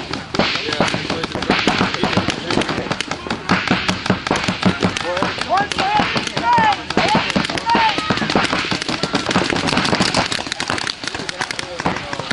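Paintball markers firing in rapid, near-continuous strings of pops from several guns at once. Players shout a few times about halfway through.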